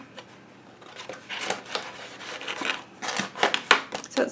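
Stiff painted paper flaps of a Dylusions art journal being folded shut and pressed flat by hand: paper rustling and rubbing starting about a second in, with a few sharper flaps and slaps near the end.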